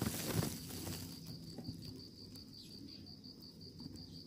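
An insect chirping in a high, rapid, evenly pulsing note that keeps on steadily, with a brief rustling noise at the start.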